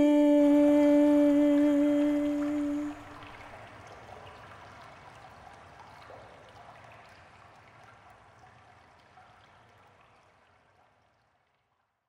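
A female singer holds the song's final note, steady after a short stepping fall in pitch, for about three seconds until it stops. A soft, rain-like hiss follows and fades away to silence near the end.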